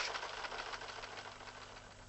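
Rapid mechanical clatter of a news-teletype sound effect, fading away.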